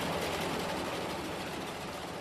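Machinery running steadily with a fast, even rattle, easing slightly toward the end.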